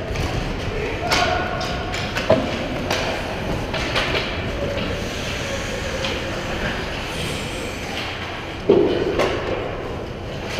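Ice hockey game sounds in an indoor rink: skates on ice, sharp stick and puck clacks, and players' voices carrying across the arena. A loud thud comes near the end as play reaches the net.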